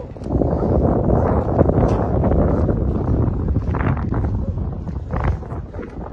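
Wind buffeting the microphone: a loud, steady low rumble with no clear pitch.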